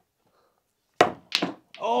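Snooker cue tip striking the cue ball about a second in, followed a third of a second later by a second sharp clack of a ball that jingles and jangles in the pocket. A man's voice starts near the end.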